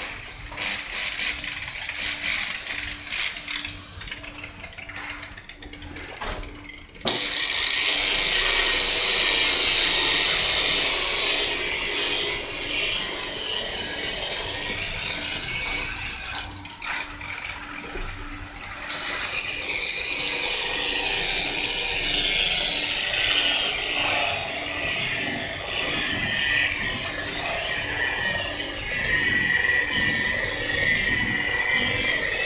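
Handheld electric rotary polisher running with a steady whine as its pad buffs a car's painted door panel. For the first several seconds the spinning pad is being washed in a bucket of water, with a wet, splashy sound, before the steadier buffing sound takes over about seven seconds in.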